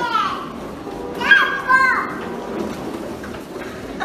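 A young child's high-pitched voice, two short squealing calls, one right at the start and one about a second in, over low room noise.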